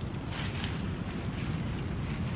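Wind rumbling steadily on the microphone, with a faint rustle of leaves being handled about half a second in.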